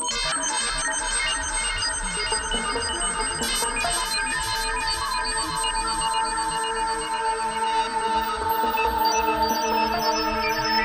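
Electronic synthpop music: held synthesizer tones under a rapid pattern of short, high, ringtone-like notes, slowly growing louder.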